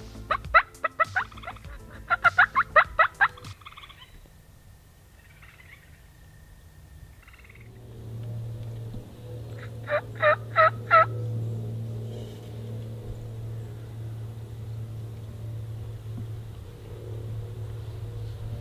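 Wild turkey gobbler gobbling: two rapid runs of sharp rattling notes in the first three seconds, then a short run of four sharp turkey calls about ten seconds in. A steady low hum runs underneath from about eight seconds on.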